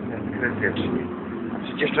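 Low, steady rumble of a moving city bus or tram heard from inside the passenger cabin, with a woman's voice briefly near the end.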